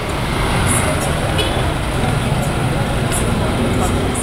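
Street traffic: a motorcycle and a small car passing close by, with a steady low engine rumble.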